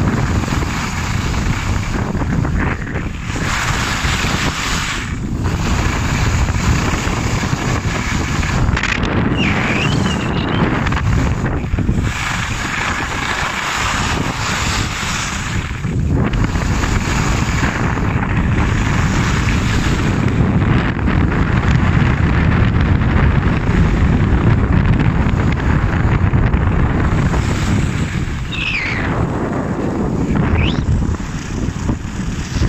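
Wind rushing over a moving camera's microphone as a skier runs fast down a groomed piste, with skis scraping on the snow through the turns and dipping briefly every few seconds. A brief high squeak comes twice, about a third of the way in and near the end.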